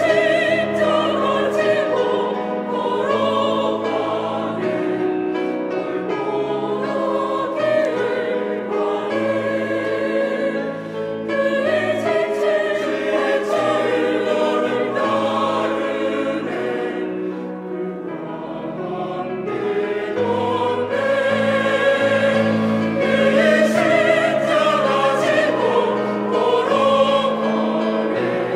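Korean church cantata song: a soloist singing into a microphone with a choir and instrumental accompaniment. The sung line is about carrying the cross on the road to Golgotha.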